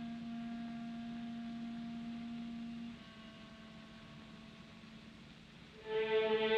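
Orchestral film score holding long, soft sustained notes: one note held for about three seconds, then a quieter, slightly lower note.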